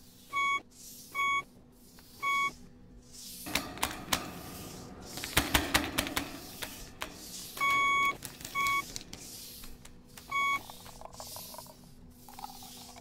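Electronic beeps on a film soundtrack: three short beeps in the first two and a half seconds, then a longer beep and two short ones later on. Between them comes a stretch of crackling noise full of sharp clicks.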